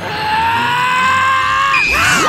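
A long, high-pitched transformation scream that holds nearly one pitch and rises slightly, then breaks into a sliding, falling tone near the end.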